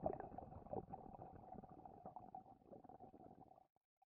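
Faint underwater bubbling and gurgling sound effect, crackling with many small irregular pops, cutting off abruptly near the end.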